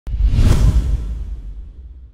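Loud whoosh sound effect for a logo intro. It hits suddenly at the start with a deep rumble, sweeps to its peak about half a second in, then fades away over the next second and a half.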